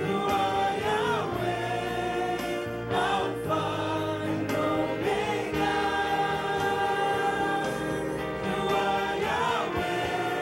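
Gospel choir with lead singers singing a slow worship song, holding long notes.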